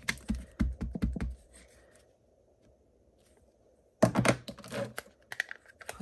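A rubber stamp tapped repeatedly onto an ink pad and pressed down on cardstock: a quick run of light taps with dull knocks, a short pause, then a cluster of sharper knocks and handling noise about four seconds in.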